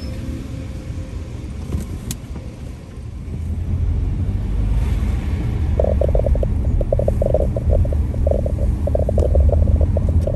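Low rumble of a car being driven, growing louder about three and a half seconds in, with a rapid fluttering rattle joining it from about six seconds.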